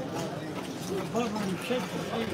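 Indistinct voices talking in the background, with no clear words and no distinct clicks or knocks.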